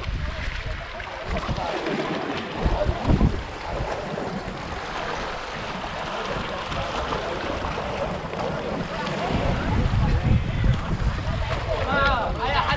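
Wind buffeting the microphone in uneven gusts over a steady wash of sea water on a shallow reef edge.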